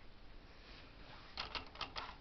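A quick run of light plastic-on-metal clicks near the end, as the plastic cast-on comb is hooked onto the needles of a Bond knitting machine; before that only faint handling.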